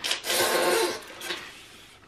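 Cardboard lid of a box scraping and rubbing as it is pulled off its base, a rough noise for about a second that then fades away.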